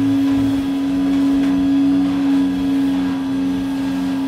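Vacuum cleaner running steadily: a constant motor hum over a hiss of air.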